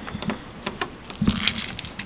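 Fingers pressing and tapping on a fiberglass canoe deck, testing a repaired soft spot for firmness: a few light clicks and a short rustle.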